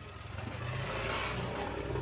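A road vehicle passing close by: a low engine rumble with a rush of noise that swells from about half a second in and holds to the end.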